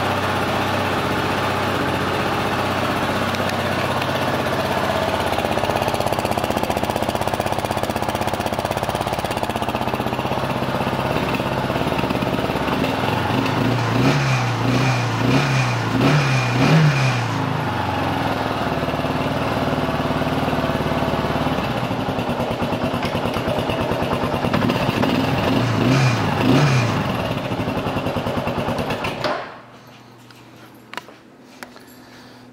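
2002 Kawasaki KLR650's single-cylinder four-stroke engine idling, with the throttle blipped in a quick series of revs about halfway through and again a few seconds before the end. The engine sound stops abruptly just before the end.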